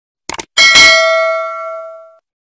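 Notification-bell sound effect from a YouTube subscribe-button animation: a quick double click, then about half a second in a bright bell ding that rings on and fades away over the next second and a half.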